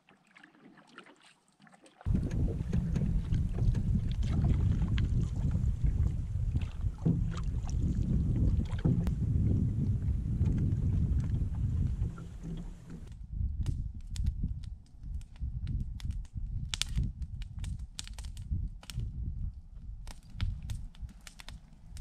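Canoe being paddled on a lake, with wind rumbling on the microphone from about two seconds in. Past the halfway point the wind eases and scattered light ticks and splashes of paddle and water come through.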